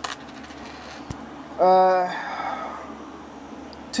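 Copper pennies clicking against each other as they are handled, with a sharp click at the start and a fainter one about a second in. About halfway a man gives a short held "hmm".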